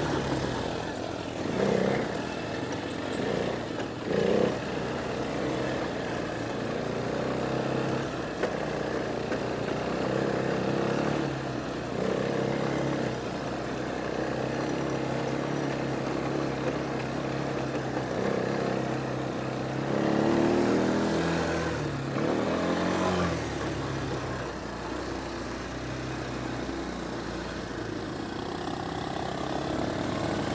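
Quad-bike ATV engine running as it rides along, holding a fairly steady pitch, with the revs climbing and dropping back about twenty seconds in. A couple of short knocks sound about two and four seconds in.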